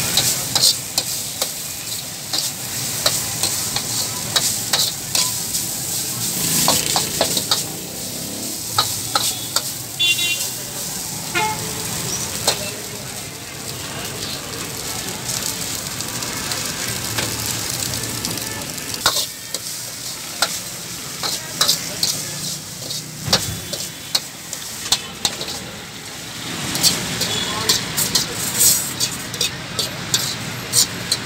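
Metal ladle scraping and knocking against a steel wok as boiled rice with egg and vegetables is stir-fried, with frequent sharp clanks of ladle on pan over a steady sizzle from the hot oil.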